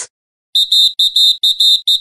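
Rapid, high-pitched electronic beeping, about five beeps a second in a slightly uneven rhythm, starting about half a second in after a brief silence.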